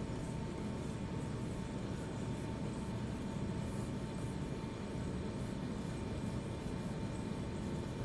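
Steady room noise with a faint, even hiss and a thin steady tone, with no distinct strokes or clicks.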